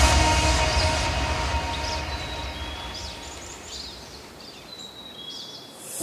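Electronic trance music fading out under a hissing wash of noise, steadily dying away, while short bird chirps come in over the fade.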